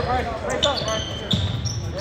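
Basketball shoes squeaking on a hardwood gym floor during play, a few short, high squeaks.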